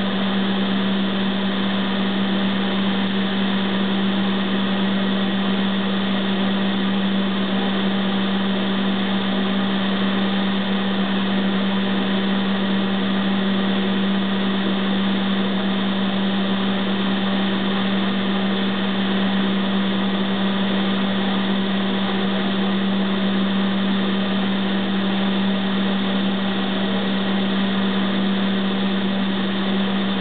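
Bench-top paint ventilation booth's exhaust fan running steadily: an even rushing of air over a strong, constant low hum.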